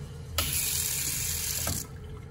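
A touchless sensor faucet runs water into a ceramic sink basin. The flow starts suddenly about half a second in and cuts off again after about a second and a half.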